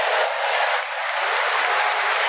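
An audience clapping steadily, a dense wash of applause.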